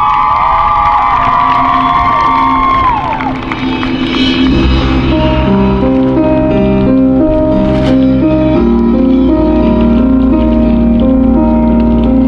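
Cheering and whooping from the crowd in the stands dies away about three seconds in. A second later the marching band's show music begins: a low bass drone under a slow, repeating pattern of held notes that step from one to the next.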